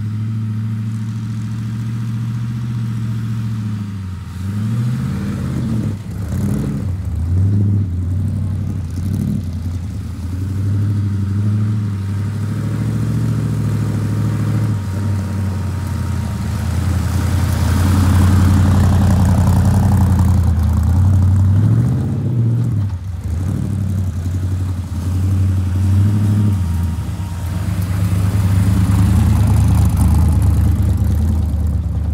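Gasser-style car's engine running, mostly steady, with several short revs, as the car is driven and slid around on snow. A louder stretch with added hiss comes about 18 to 22 seconds in.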